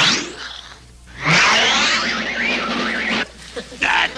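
Cartoon sound effect: a falling whistle-like glide at the start, then about two seconds of a loud warbling whoosh that cuts off near the end.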